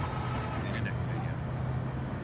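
Steady low engine hum, with two short clicks about three-quarters of a second and one second in.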